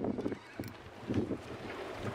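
Wind buffeting the microphone in uneven gusts, over a faint steady low hum.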